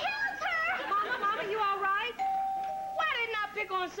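A child's high-pitched excited shouting, with other voices joining near the end, and a short steady tone just over two seconds in.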